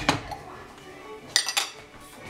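A metal utensil clinking against dishware: a knock at the start, then two or three quick, sharp clinks about one and a half seconds in.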